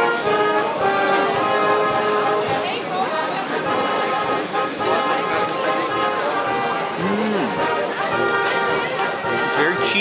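Brass band music playing steadily, with held notes, over the chatter of a crowd.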